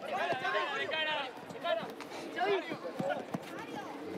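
Voices calling out on a football pitch during play: several short shouts, fainter than the match commentary.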